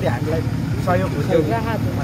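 A man talking, over a steady low hum from running machinery.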